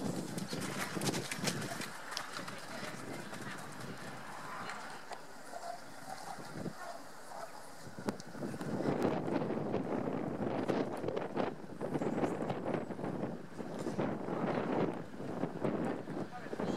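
Horse's hoofbeats cantering and jumping on a gravel arena surface, growing louder about halfway through.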